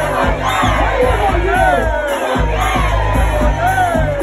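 Loud DJ dance music with a steady beat and a deep bass line, and the voices of a packed crowd shouting along over it.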